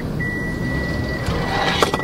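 A car's parking-sensor warning sounding a single high, steady, unbroken beep, which a parking sensor gives when an obstacle is very close to the car. A few sharp clicks come near the end.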